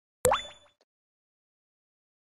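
A short electronic pop sound effect with a quick upward sweep in pitch and a brief ringing tail, fading out within about half a second.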